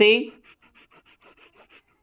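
Stylus rubbing on a tablet screen while drawing an underline: a quick run of faint strokes, about eight a second, lasting just over a second.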